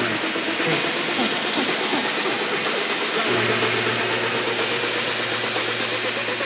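Electronic dance music played through a club sound system during a breakdown with no kick drum: a crisp percussive tick about twice a second over a busy mid-range. A steady bass note comes in about three seconds in.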